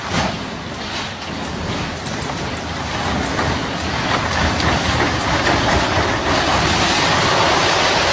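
Concrete farm silo collapsing: a continuous rumble of crumbling concrete with scattered cracks, slowly growing louder as the tower tips over and comes down.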